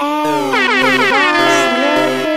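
Electronic dance remix music with a horn-like sound effect whose many tones glide downward in pitch, starting about half a second in, then waver.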